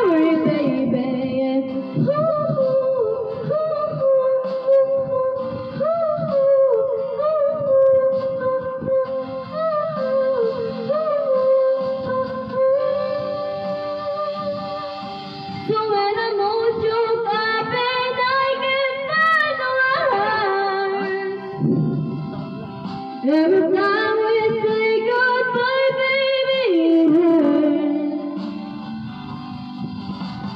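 A young woman singing a slow ballad into a handheld microphone, holding long, wavering notes over musical accompaniment, with two short breaths between phrases in the second half.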